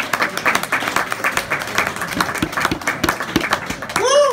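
A small audience applauding, with many separate hand claps heard distinctly.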